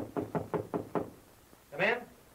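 Quick knuckle-knocking on a wooden cabin door, a run of about seven rapid knocks in the first second.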